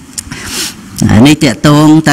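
A man giving a Khmer dharma talk into a handheld microphone: a short pause of about a second, then his voice resumes about a second in.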